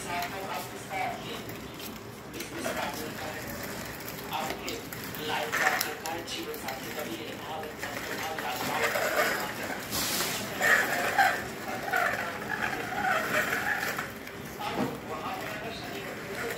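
A young child's wordless babbling and calls, coming and going, over the rattle of a plastic baby walker's wheels rolling on a concrete floor.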